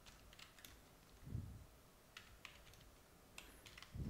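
Faint computer keyboard typing, with scattered key clicks. Two duller, deeper knocks fall about a second in and at the very end.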